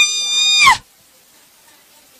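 A single shrill, very high-pitched held cry, under a second long, that slides up at the start and dips at the end. After it there is only faint background murmur.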